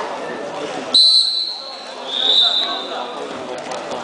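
Referee's whistle blown twice: a sharp high blast about a second in, then a second, slightly lower blast just after two seconds. This is the signal to start the wrestling bout. Spectator chatter continues underneath.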